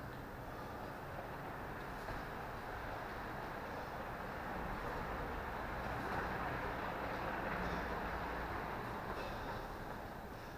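Steady low rumble of traffic noise, swelling a little in the middle of the stretch and easing near the end.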